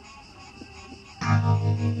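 Faint intro sounds, then about a second in a heavy distorted electric guitar chord in drop C tuning comes in loud and is held, pulsing in level about five times a second. The guitar is an ESP LTD MH-401FR with EMG pickups, played through an EVH 5150 III amp.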